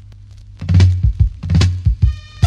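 Reggae track starting: a quiet stretch of low hum gives way about a third of the way in to heavy, deep drum and bass hits, three of them, as the band comes in.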